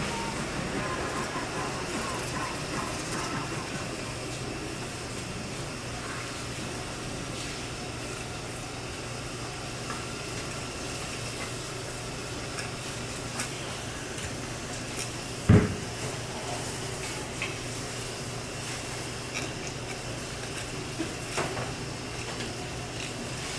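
Knife work on a wooden cutting board while filleting a mahi-mahi: scattered light taps and scrapes over a steady low hum, with one loud thump about two-thirds of the way through.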